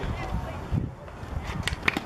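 Outdoor ballfield ambience during a softball play: faint, scattered voices over a low rumble, with a few sharp knocks, one a little before the middle and two close together near the end.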